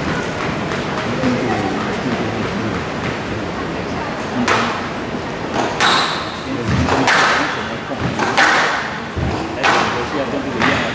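Squash rally: the ball struck by rackets and hitting the walls of a glass court, giving sharp impacts every half second to a second from about four seconds in, over a steady crowd murmur.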